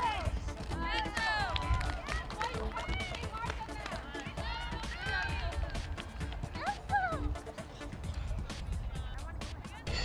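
Excited, high-pitched shouting and cheering from players and spectators right after a goal in a girls' soccer game, loudest in the first second or two and then thinning to occasional calls, with wind rumbling on the microphone.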